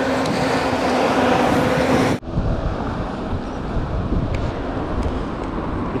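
Road traffic: a vehicle engine running with a steady hum over road noise. About two seconds in this cuts off suddenly, and a lower, rougher background rumble follows.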